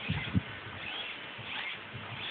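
Small RC helicopter swashplate servos whirring in a few short, faint, squeaky whines as they move under hand load, after a couple of low handling knocks at the start.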